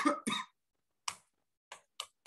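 A man coughs twice in quick succession, followed by a few scattered, soft computer keyboard keystrokes.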